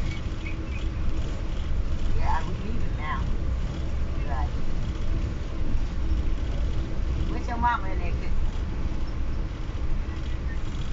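Steady low rumble of an Amtrak passenger train running at speed, heard from inside the coach.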